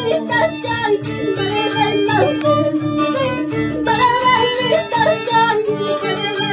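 Andean folk band playing a shacatán tune: violins carry the melody over the regular plucked bass beat of an Andean harp.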